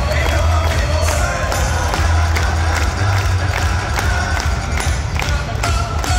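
A pitcher's entrance music played loud over a domed baseball stadium's PA system, with heavy bass and a steady beat, echoing in the dome above the crowd in the stands.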